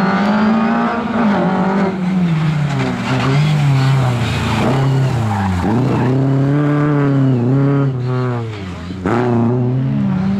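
Lada 2101 rally car's four-cylinder engine driven hard: the note climbs and falls several times as the driver lifts and accelerates through a corner, dropping sharply about halfway through before pulling hard again.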